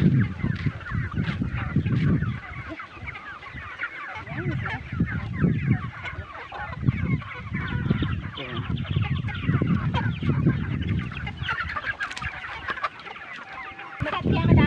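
A flock of village chickens calling together: many overlapping short clucks and cheeps all through. A low rumbling noise swells and fades every second or two underneath.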